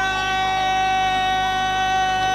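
A steady high-pitched tone with overtones, holding one pitch without change throughout.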